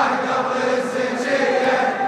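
Large crowd of men chanting a Shia latmiya lament together, many voices in unison.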